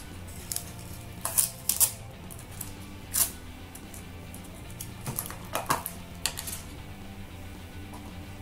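Clear plastic dessert cup being handled and its lid peeled open: a scattered run of sharp plastic clicks and crackles, with the loudest a couple of seconds apart. Quiet background music plays underneath.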